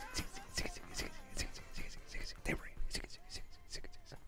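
Faint, breathy murmurs from two men, short and broken, with small clicks between them.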